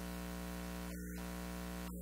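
Steady electrical hum and hiss: several low tones held perfectly constant with no speech over them.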